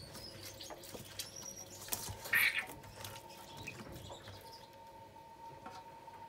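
Bare hands squeezing and kneading salted tilapia in a stainless-steel bowl: faint wet squishing with light clicks and taps against the bowl, and a brief chirp-like squeak about two seconds in.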